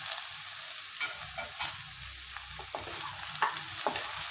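Mutton pieces and sliced onions frying in a nonstick pan with a steady sizzle, while a wooden spatula stirs them, scraping and tapping against the pan a few times.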